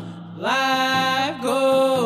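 Drum-group song: voices chanting long held notes over a steady drum beat. The singing comes back in about half a second in after a short gap.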